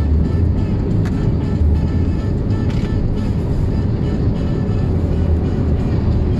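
Steady road and engine rumble inside a moving car's cabin, with music playing in the background.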